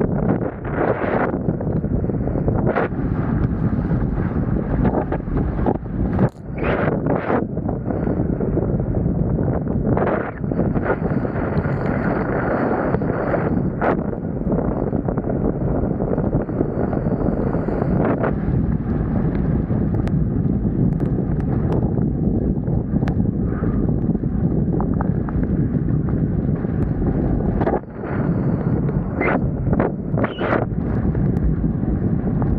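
Heavy wind buffeting an action camera's microphone while kitesurfing at speed, a steady low rumble, with the board's rush through the chop and brief sharp crackles of spray now and then.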